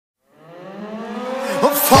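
A whine with many overtones fades in from silence, growing louder and slowly rising in pitch, as the intro to a song. A singing voice comes in at the very end.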